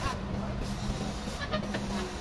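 Forklift engine running with a steady hum as it carries a heavy log.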